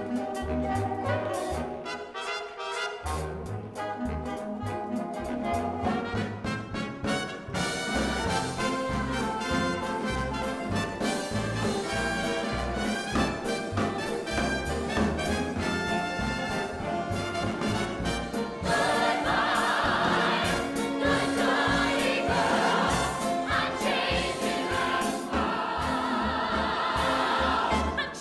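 Recorded show-tune music with brass and a chorus singing, played for a tap routine, with sharp clicks of tap shoes running through it. The music gets fuller and louder about two-thirds of the way in.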